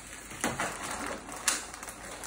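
A plastic bag being torn open by hand, crinkling and rustling, with two sharp crackles, the second and louder one about a second and a half in.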